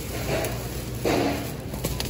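Thin plastic grocery bags rustling in two short bursts as an item is bagged, over a low, steady hum of store background noise.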